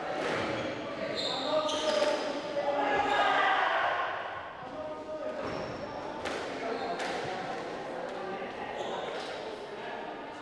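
Indistinct voices echoing in a large hall, with a few sharp knocks in two pairs, one about a second in and one about six seconds in.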